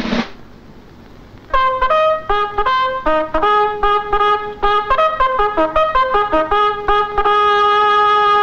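A military bugle sounding a call. A run of quick notes starts about a second and a half in and ends on one long held note.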